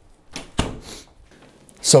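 A short rustle and thump of clothing and body against a clip-on microphone as a person sits down, about half a second in, followed by a softer rustle.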